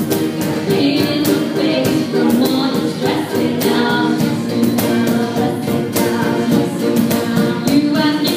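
Live band playing a soul-pop song: a woman singing lead into a microphone over acoustic and electric guitars and a cajon keeping a steady beat.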